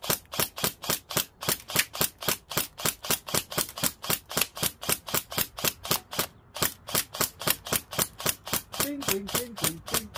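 Airsoft rifle firing 6 mm BBs in a rapid, even string of shots, about four a second, with a brief pause about six and a half seconds in.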